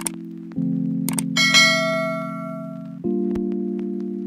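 Background music of held chords that change every couple of seconds. Over it come a couple of clicks and then, about a second and a half in, a bright bell ding that rings out and fades: a subscribe-button animation's click and notification bell.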